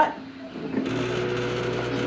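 A 3D printer running: a steady mechanical whir and hum of its motors and fan that comes on suddenly about a second in.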